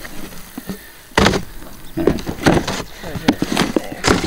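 Cardboard boxes being handled and set down on a wooden cable-spool table: one sharp knock about a second in, then several lighter bumps and rustles.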